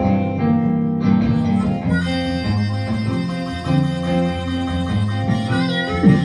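Live blues: a hollow-body electric guitar plays a walking accompaniment. An amplified harmonica, played into a microphone, joins about two seconds in with a reedy, organ-like wail.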